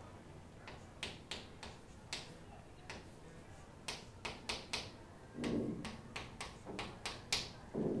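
Chalk on a blackboard: irregular sharp taps and short scrapes as a chemical structure is written. About two-thirds of the way in there is a brief, louder low sound.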